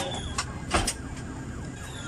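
An ambulance siren sounding, with three sharp knocks in the first second.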